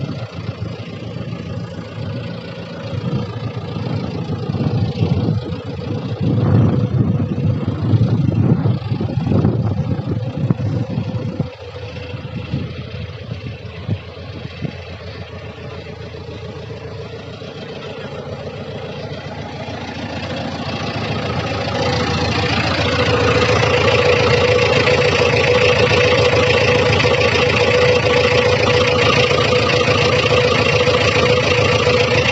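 JCB 3DX backhoe loader's diesel engine running: loud and uneven while the machine works for the first ten seconds or so, dropping off suddenly at about eleven seconds, then growing louder about twenty seconds in and settling to a steady drone with a strong held tone.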